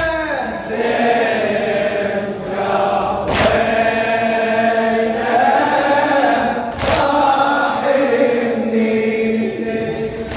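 Male reciter chanting a Shia latmiya (mourning elegy), with the gathered men's voices joining in chorus. Heavy thumps land about every three and a half seconds, the mourners beating their chests in time with the chant.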